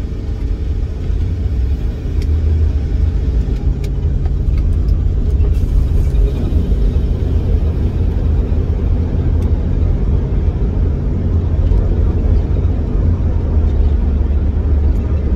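Utility van's engine running, heard from inside the cabin as a steady low rumble that grows a little louder about two seconds in. The driver suspects it may be missing slightly on one cylinder.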